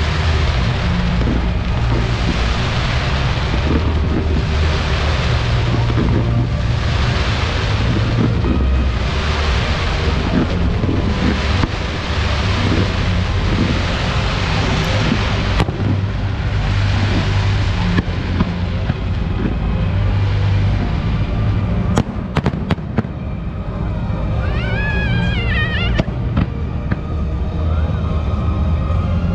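A fireworks display going off over loud music with a heavy bass: rushing bursts swell every second or two, with a few sharp bangs past the middle.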